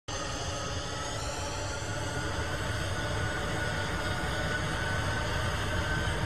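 Jet airliner engines: a steady rushing noise with a whine that slowly rises in pitch, as at takeoff.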